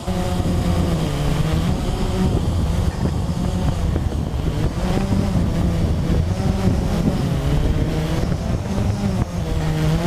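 Blade 350 QX quadcopter's electric motors and propellers whirring close to the mounted camera. Several pitches drift up and down together as the motor speeds are trimmed while it holds near the pilot.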